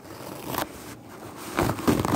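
A paper towel pulled and torn off a roll: rustling and scraping, with two louder bursts, one about half a second in and one near the end.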